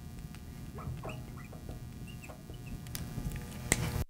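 Felt-tip marker squeaking on a glass lightboard in short chirps as words are written and underlined, with a couple of sharp taps near the end.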